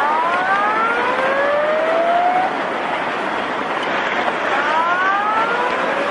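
A siren wailing upward twice, each rise lasting about two seconds and the second starting about four and a half seconds after the first, over a steady rushing roar from the tsunami flood.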